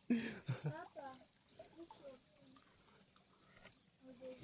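Faint speech for about the first second, then near quiet with only faint scattered sounds.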